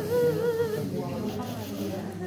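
Nyidau, the Dayak Kenyah sung funeral lament: a mourner's weeping, hummed chant, a wavering held note through the first second that then drops to softer, wavering voice.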